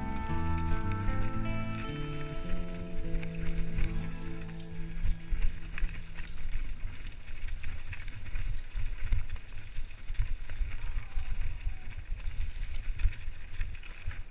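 A mountain bike rattling and clattering down a rocky trail, with irregular knocks and thumps from the tyres and frame over the rocks and a steady rumble of ground and wind noise. A piece of background music ends about three seconds in.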